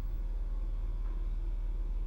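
A steady low hum with faint room tone and no distinct events.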